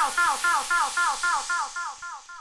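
Outro of a Scouse house dance track. The kick drum has dropped out, leaving a synth riff of short, falling notes, about four a second, over a hiss. Both fade out steadily.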